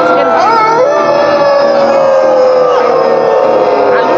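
Live concert sound: a long held note from the stage that slowly sinks in pitch, with audience members whooping and calling over it.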